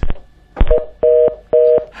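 Telephone line sounds: a couple of clicks, then three short beeps of a steady two-note tone as the next caller's line is put through.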